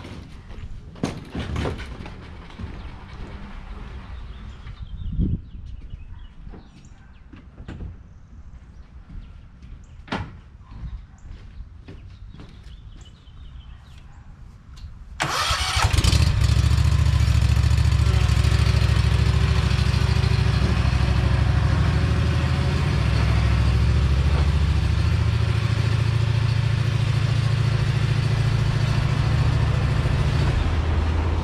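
Scattered knocks and footsteps, then about halfway through a stand-on mower's gas engine starts suddenly and runs loud and steady.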